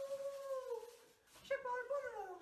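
A young man's voice giving a long, drawn-out call that slowly falls in pitch, then a second one starting about one and a half seconds in.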